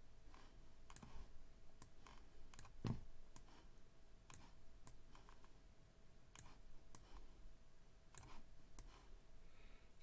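Faint computer mouse clicks, irregularly spaced, with one louder click about three seconds in, as elements are dragged and dropped in desktop software.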